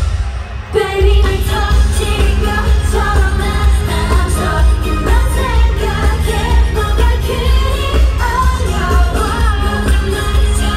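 K-pop song with singing over a heavy, steady bass beat, played loud through a stadium sound system and heard from the stands. The music drops briefly at the very start, then comes back in full.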